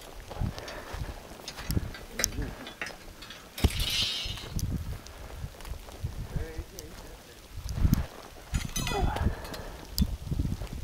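Footsteps crunching and rustling through dry leaf litter and grass, with irregular crackles and low thumps.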